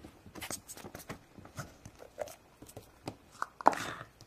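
Hands working plastic play-dough tools: a string of irregular small clicks and taps as an empty Play-Doh can and a plastic mold are pressed into the dough and handled, with a sharper knock and brief scrape near the end.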